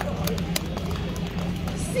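Crowd applause dying away to a few scattered claps over steady crowd murmur and a low hum from the open-air gathering.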